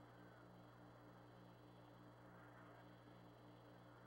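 Near silence: the faint steady hum and hiss of the Apollo 11 air-to-ground radio channel between transmissions, with a light pulsing about four times a second in the hum.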